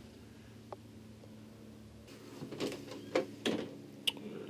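Door being handled in a motorhome bathroom: a small tick about a second in, then a quick run of clicks and knocks in the second half, over a faint steady hum.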